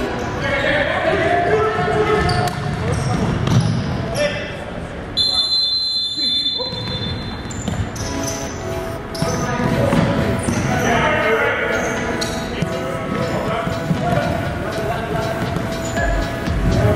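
Live game sound of futsal in a gymnasium: players shouting, and the ball thudding on the hardwood floor. About five seconds in, a high steady squeal lasts under two seconds.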